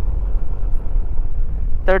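A Yamaha NMAX scooter in motion: a steady, loud low rumble of wind on the microphone mixed with engine and road noise. A man's voice starts right at the end.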